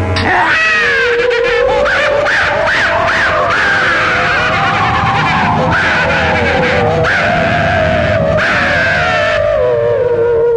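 Eerie film background score: high, wavering, wailing tones that slide up and down over a dense sustained texture, coming in abruptly at the start.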